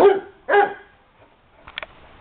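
Basset hound barking twice in play, two loud deep barks about half a second apart, followed near the end by a couple of short, faint high-pitched sounds.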